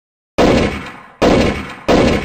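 Three heavy impact sound effects on an animated title card, starting about half a second in. Each is a sudden loud hit that fades away over about half a second, the hits coming roughly 0.7 s apart.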